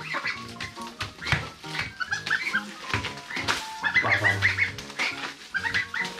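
Background music with steady held notes, over month-old goslings peeping in short runs of high calls, clearest about two and four seconds in.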